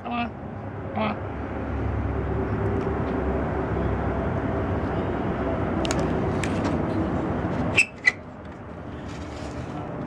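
Sharp clicks and light metal clatter as a kerosene lantern is lit with a long-nosed lighter, a few near the six-second mark and two more about eight seconds in. Under them is a steady low rumble that cuts off abruptly at the first of those last two clicks.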